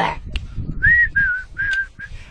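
A man whistling three short notes: the first arches up and down, and the next two are a little lower and waver slightly.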